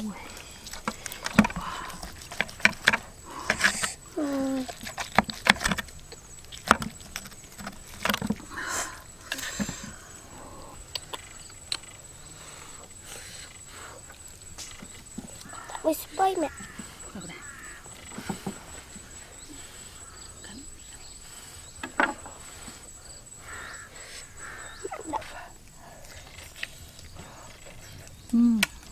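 A knife cutting and scraping through cooked meat on a plate, heard as a run of sharp clicks and knocks that thin out after about ten seconds, with a thin steady high tone behind them.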